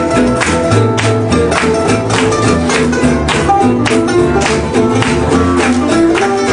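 Acoustic gypsy swing band playing live: guitar chords strummed in a steady swing beat, with plucked-string melody notes and a walking bass line underneath.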